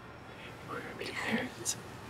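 Quiet whispering and soft breathy murmurs, with a brief hiss near the end.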